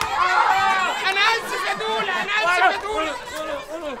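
Several women's voices shrieking and crying out at once in overlapping high-pitched screams of fright.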